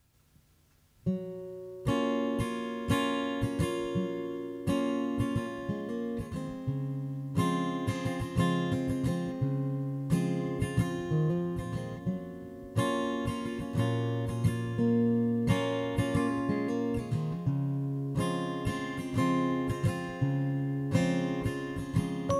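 Acoustic guitar playing alone, starting about a second in: plucked and strummed chords struck roughly every second or so, each left to ring and fade.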